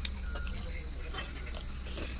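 Steady high-pitched chirring of insects, with a low rumble underneath and a few faint clicks.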